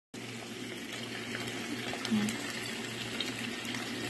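Steady, even rush of water with a faint low hum beneath it.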